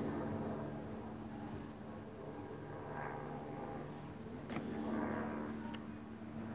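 Steady low hum of a vehicle engine running in the background, with a couple of light taps in the second half.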